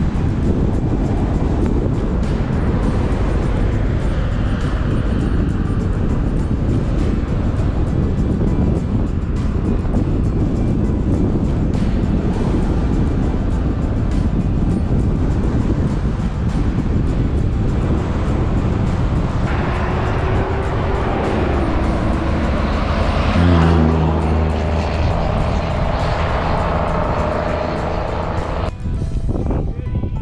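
A car driving along a highway, with a steady rush of road and wind noise, under background music. About three-quarters of the way through, a louder pitched hum swells for a few seconds.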